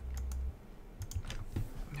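Several light, scattered clicks at a computer keyboard and mouse, quiet and irregular.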